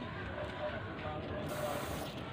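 Oxy-acetylene torch flame hissing steadily just after the oxygen valve is opened to set the flame, the hiss turning brighter in the last half second.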